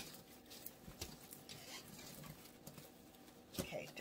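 Faint, irregular light clicks and rustling of artificial flower picks and stems being pushed into an arrangement in a slatted metal basket.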